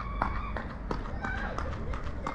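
Light running footsteps on a paved street with faint, distant children's voices.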